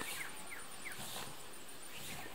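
Quiet outdoor ambience with three short, faint falling chirps from a small bird in the first second, over a faint high insect whine.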